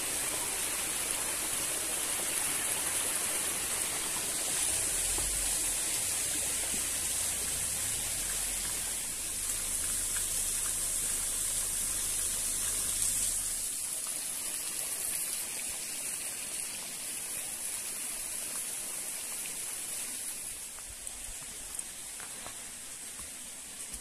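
Water of a small waterfall rushing steadily over rocks, growing quieter about halfway through.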